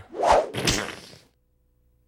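A short unpitched whoosh in two swells, lasting about a second and cutting off just over a second in.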